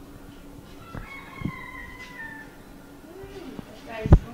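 A cat's long meow, one drawn-out cry that falls slightly in pitch, starting about a second in.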